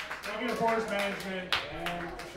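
People talking, with no music playing, and a single sharp click about halfway through.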